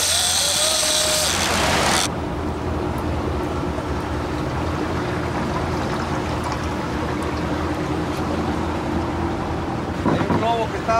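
Rushing wake water and wind noise for about two seconds. After a sudden cut comes a boat's engine running with a steady low drone.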